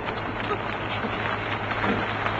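A vehicle's engine running steadily at low speed, a low even hum under a noisy haze.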